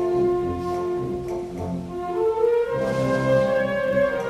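Concert wind band playing a concert pasodoble, brass carrying long held notes of the melody over a rhythmic low accompaniment.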